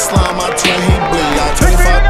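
Hip hop music: a rap backing track with deep bass notes that slide downward and hi-hats on top.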